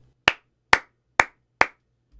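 Four sharp hand claps about half a second apart. They are sync claps, a marker for lining up the audio with the video.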